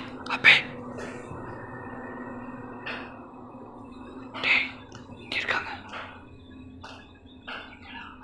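Hushed voices in short bursts a second or two apart, over a faint steady hum.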